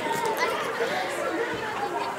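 Indistinct background chatter of several voices.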